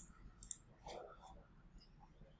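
Faint computer mouse clicks: one at the start, a quick pair about half a second in and a fainter one near the end, over quiet room tone.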